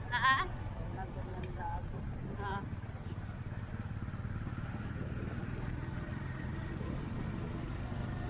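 Motorcycle engine running steadily as the bike rides along, with wind and road noise on the microphone.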